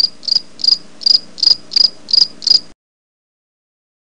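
Cricket chirping sound effect: a steady run of high chirps, about three a second, that stops short about two-thirds of the way through. It is the cartoon 'crickets' gag for an empty, awkward silence.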